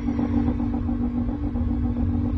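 A steady low droning hum: two held low tones over a deep rumble, a soundtrack drone that does not change.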